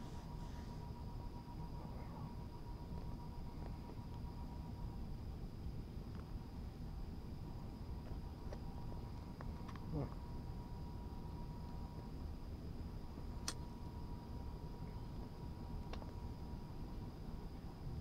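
Quiet outdoor night ambience: a steady low rumble with a faint, steady high-pitched tone, and a few soft clicks.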